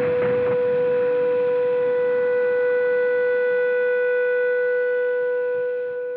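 Music: the closing sustained note of an indie/electro-pop song ringing out, one steady pitch with overtones, after a noisy crash dies away in the first half second. It begins to fade near the end.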